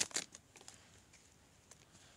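A foil Pokémon booster-pack wrapper crinkling, dying away within the first half-second, then near quiet with a couple of faint ticks.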